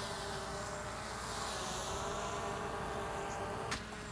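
DJI Mavic Air 2 quadcopter's propellers running in a steady buzzing hum as it lifts off on auto takeoff and hovers a few feet above the ground.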